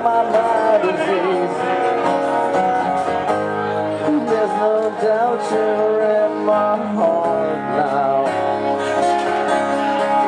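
Acoustic guitars playing a slow instrumental passage, with a sliding melody line over the chords.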